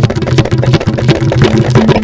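News programme intro theme music: a fast, driving percussion beat over sustained low synth notes.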